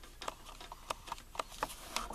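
Faint, irregular light clicks and taps of handling noise, several a second, over a low hiss while the camera is zoomed in.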